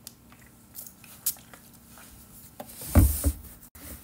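Quiet handling of a plastic body mist spray bottle with a few small clicks, then a loud thump about three seconds in, with a smaller one just after, as the bottle is set down on the table.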